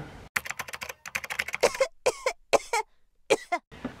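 A woman sick with COVID coughing in a string of short coughs, with a brief throaty sound among them.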